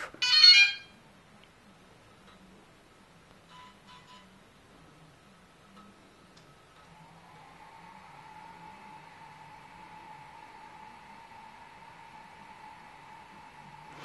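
Short electronic chime from a DJI Inspire drone rebooting after a completed firmware update, the loudest sound, right at the start. Then two faint short beeps, and from about seven seconds in a faint steady whine that rises briefly and then holds.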